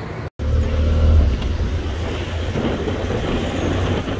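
Motorcycle riding noise picked up by the rider's camera: steady low engine and wind rumble that cuts in abruptly just after a brief dropout near the start.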